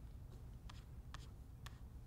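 A few faint, sharp clicks, about three in under two seconds, from working a laptop to scroll and click through a web page, over a low steady room hum.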